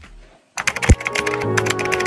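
About half a second in, intro music starts with a computer-keyboard typing sound effect clicking rapidly over it, and one deep hit just after the start.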